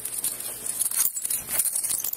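Rustling and scuffing of clothing and handling noise close to a body-worn camera's microphone, as handcuffs are moved from behind the back to the front.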